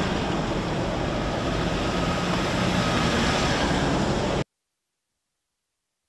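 Vehicles running nearby, a steady loud noise that cuts off suddenly about four and a half seconds in.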